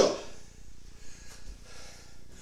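Faint rubbing of a cotton towel being wiped over skin.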